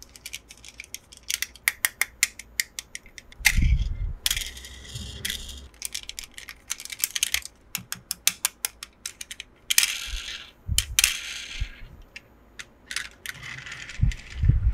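Small plastic toy cars handled and pushed on a plastic toy track: runs of quick sharp clicks and taps, a few soft thumps, and short scraping stretches of plastic rolling or sliding on plastic.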